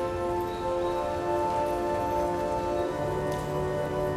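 Church organ playing slow, sustained chords, with a new low bass note coming in about three seconds in, over a steady hiss of room noise.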